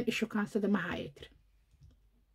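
A woman's voice speaking, trailing off about a second in, followed by silence.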